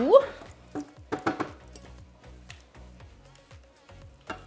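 Spatula scraping a thick milk, flour and butter mixture out of a plastic measuring jug into the Thermomix bowl, with a few soft knocks of spatula on jug in the first half.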